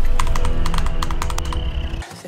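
A fast, uneven run of sharp clicks over several held musical notes, the whole fading down gradually.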